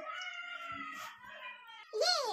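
A long, high, meow-like call, faint and drawn out, sinking slightly in pitch.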